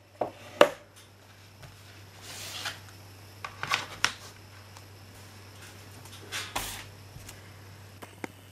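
Handling of a chipboard box set and its plastic Blu-ray cases as they are taken out: a few sharp knocks and clicks and short sliding, rustling swishes.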